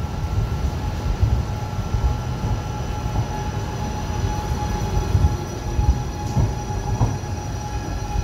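Electric passenger train at a station platform: a low rumble under a steady high whine.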